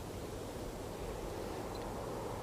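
Faint, steady outdoor background noise: an even hiss and low rumble with no distinct events.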